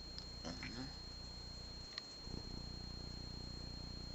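A steady, low, pulsing hum that runs through, with a brief soft murmur of a voice about half a second in.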